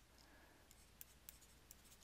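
Near silence with a low hum, broken by a few faint taps of a stylus writing on a tablet screen.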